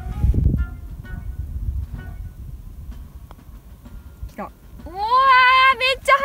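Low rumbling noise, then about five seconds in a woman's long, drawn-out 'owa~' of surprise that rises in pitch and is held, as a putt runs fast on the green.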